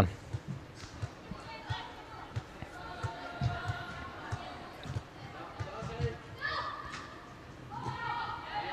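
Young players' distant shouts and calls echoing in a large indoor football hall, with scattered dull thuds of the ball and feet on the artificial turf.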